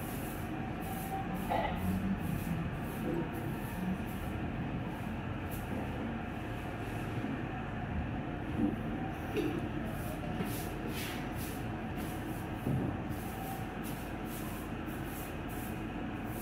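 Steady low rumbling background noise, with faint rustles and soft scratches of fingers parting hair to pick out nits.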